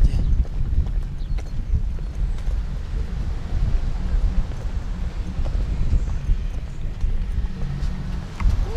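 Baby stroller wheels rolling over a paved promenade: a steady low rumble with a few faint knocks.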